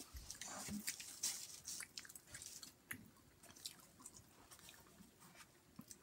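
A person chewing a mouthful of pizza close to the microphone: faint, irregular small clicks and wet mouth smacks, busiest in the first couple of seconds and thinning out after.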